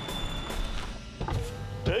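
Car power window sliding down with a steady motor whirr, a cartoon sound effect, over background music.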